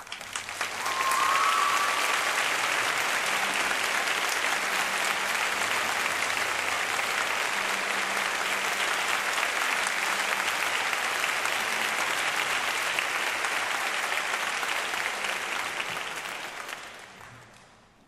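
Concert-hall audience applauding as the soloist comes on stage and bows. The applause swells up over the first second or two, holds steady, and dies away near the end.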